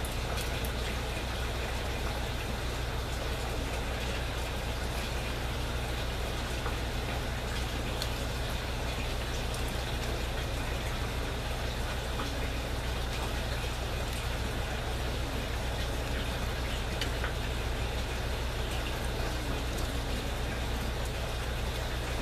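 Steady trickle and patter of water running down inside aquaponic grow towers, over a constant low hum.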